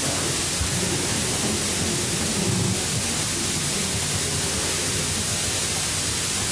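Steady hiss of the recording, with faint, indistinct voices murmuring low underneath.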